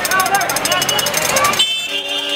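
Busy street traffic with people's voices, and a short vehicle horn toot near the end.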